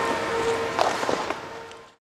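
Steady workshop background noise with a constant hum and a few light knocks about a second in, fading out to silence near the end.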